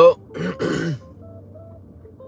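A man's throat clearing, one short rough burst lasting about half a second, just after he says "well".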